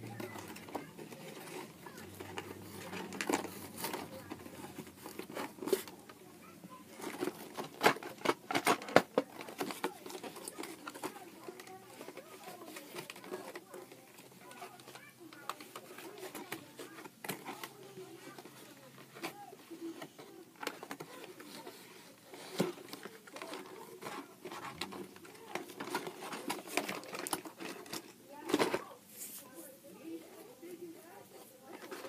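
Toy packaging being opened by hand: plastic and cardboard crinkling and tearing, with irregular clicks and knocks, the sharpest cluster about a third of the way in.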